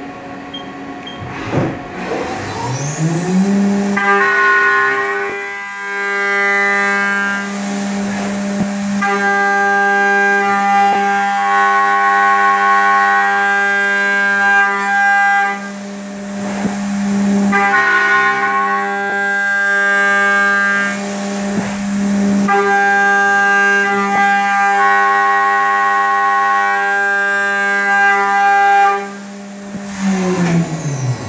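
Haas VF-2SS CNC mill spindle spinning up to a steady high hum, then a Walter 1-inch face mill cutting with a loud pitched ringing tone full of overtones. The cutting comes in four passes of several seconds each with brief breaks, and the spindle winds down near the end. The ringing is the vibration the owner blames on the cutter sticking out almost four inches.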